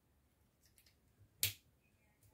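A plastic marker cap clicking onto a twin-tip marker: one sharp click about one and a half seconds in, after a few faint small clicks of handling.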